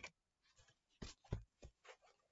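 Tarot cards being handled: a few faint, short taps and rubs of the cards, about one to two seconds in, otherwise near silence.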